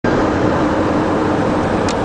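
Car driving at speed on a highway: a steady mix of engine hum, tyre and wind noise, with a short tick near the end.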